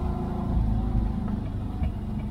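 Air-cooled flat-four engine of a 1973 Volkswagen Kombi pulling in first gear on a climb, heard from inside the cab as a steady low drone. The engine is running hot, its temperature near 130 degrees.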